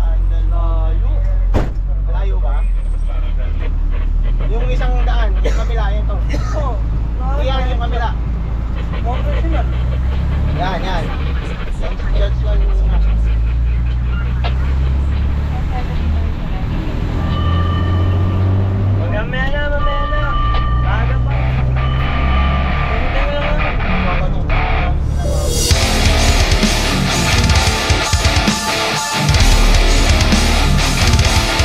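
Fire engine running on the road, heard from inside the cab: a steady low engine rumble with wavering, rising-and-falling tones over it and a few held tones near the middle. About 25 seconds in, loud guitar music takes over.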